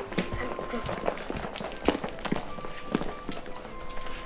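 A child's footsteps on an indoor floor, with short knocks and clicks, over soft background music.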